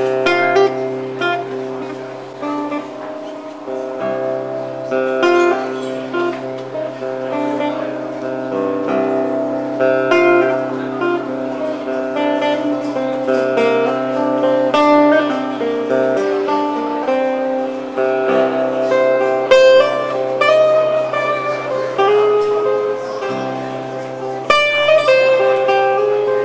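Acoustic guitar playing an instrumental passage, a line of picked notes over a held low note.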